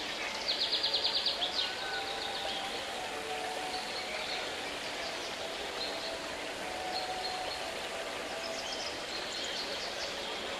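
Birdsong over a steady rushing background. About half a second in, a quick high trill of around ten notes lasts about a second and is the loudest sound. Short high chirps follow now and then.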